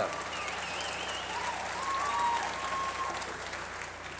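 Audience applauding a band member, with a wavering whistle in the first second and whoops and cheers from the crowd.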